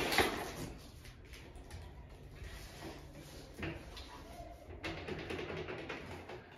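A few faint clicks and light knocks from hands working at an aluminium door frame and its latch handle while a rubber cap is pressed over a screw. One stronger stroke comes right at the start and two more about halfway through.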